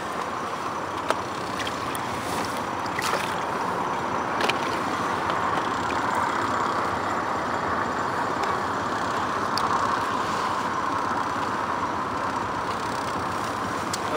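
Water sloshing and lapping against the side of a boat as a large pike is held in the water and released, over a steady rushing noise, with a few faint knocks.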